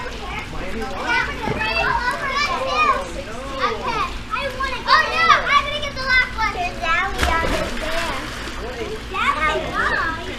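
Children shouting and chattering as they play in and around a swimming pool, their high voices rising and falling. A sharp splash about seven seconds in.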